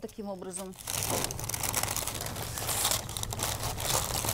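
Paper sewing pattern crinkling and rustling as it is handled and smoothed around the shoulder of a dress form, a continuous crackly rustle.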